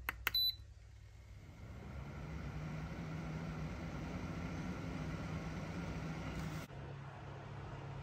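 Atorch electronic load tester switched on: a button click and a short beep, then its cooling fan spinning up and running steadily as the 1 A battery discharge test begins. Near the end the hum drops abruptly to a quieter steady hum.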